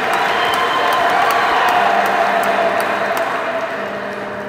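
An audience applauding and cheering, dense clapping that builds early on and tapers off near the end.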